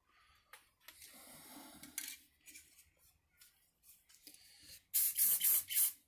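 Faint rustling and handling, then about a second of loud hissing in several quick pulses near the end.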